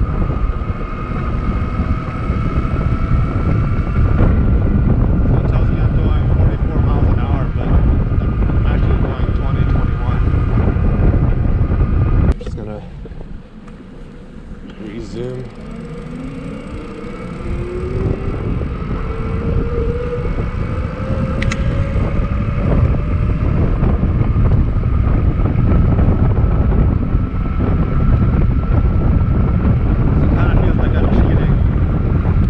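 Wind buffeting the microphone of a moving e-bike, over the steady whine of its Bafang BBS02 mid-drive motor. About twelve seconds in, the wind noise drops off suddenly. Over the next several seconds a motor whine rises steadily in pitch as the bike gathers speed again, and the wind noise builds back up.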